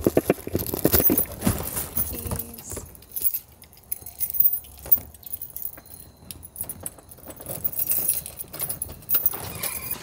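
A bunch of keys jangling, mixed with irregular knocks and rustling of bags and clothing close to the microphone, busiest in the first few seconds and again near the end.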